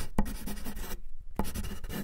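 Pen-writing sound effect: scratchy pen-on-paper strokes, with a few sharper marks among them.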